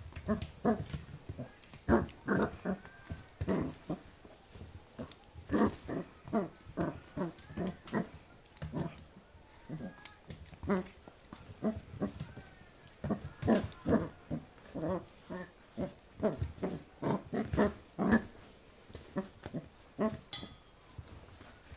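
Pembroke Welsh Corgi puppy barking at a hand in play, short high calls in quick runs with brief pauses between them.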